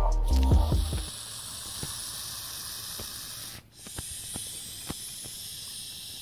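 Hognose snake hissing steadily, with a short break about three and a half seconds in. This is its defensive hiss at being approached. Background music fades out in the first second.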